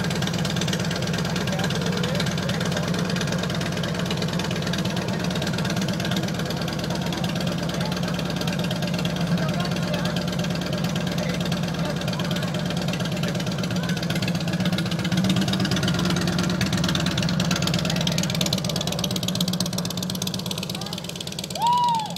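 Harley-Davidson touring motorcycle's V-twin engine running steadily, then pulling away, its sound fading over the last few seconds. A brief high-pitched sound near the end.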